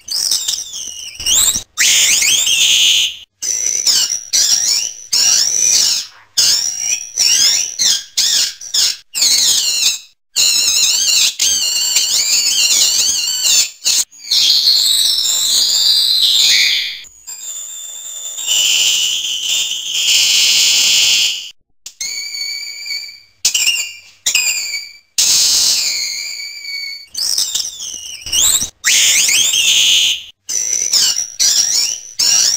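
An armadillo screaming: a run of high-pitched, wavering squeals one after another with short breaks, a few of them held for two or three seconds.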